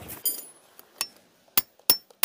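Metal tent stakes being pegged into hard dirt: about four sharp metallic clicks and clinks spread over two seconds, the first ringing briefly.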